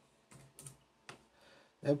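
A few separate keystrokes on a computer keyboard as a search word is typed in and entered.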